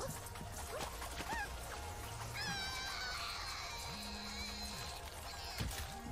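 Anime episode soundtrack playing quietly: background music and effects, with a high, wavering tone from a little before halfway that settles onto a steady pitch and fades out near the end.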